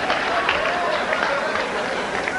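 Live comedy audience laughing, with some clapping: a steady wash of crowd laughter with a few single voices standing out.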